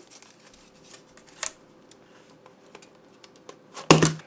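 Hard plastic packaging being worked by hand to free a mouse, with scattered faint clicks and a stronger tick about a second and a half in. A loud sharp clack comes near the end.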